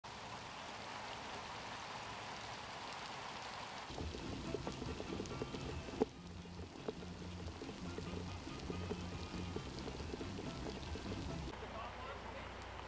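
A steady hiss of heavy rain. About four seconds in, background music with low sustained notes joins it, and the rain goes on underneath. There is a single sharp click at about six seconds.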